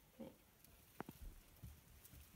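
Near silence: quiet room tone with one short click about halfway through and faint handling rustles.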